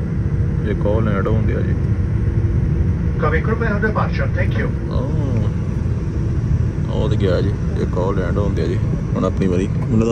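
Steady low rumble of a jet airliner's engines heard from inside the cabin as it taxis, with voices talking over it several times.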